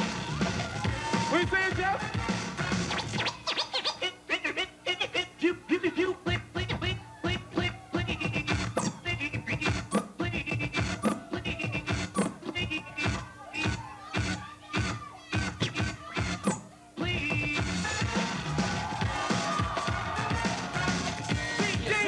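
Hip hop DJ scratching and cutting a vinyl record on turntables over music. The middle stretch is a run of rapid, choppy scratches, and about two-thirds of the way through the record cuts back in to play steadily.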